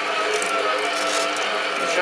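STARWIND SPM7169 planetary stand mixer running steadily at low speed, its motor humming with a constant pitch as the attachment kneads bread dough in the steel bowl.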